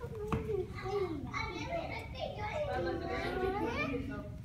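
Children's voices chattering and calling out while they play in an indoor play area, with one short knock just after the start.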